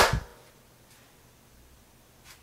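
A single short, sharp burst of noise right at the start, lasting about a third of a second, then near silence.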